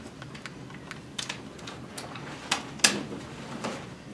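A series of irregular sharp clicks and taps over quiet room noise, the loudest about three-quarters of the way in.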